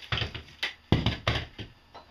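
A run of about seven knocks and taps of wood and tools being handled on a workbench, the loudest about a second in.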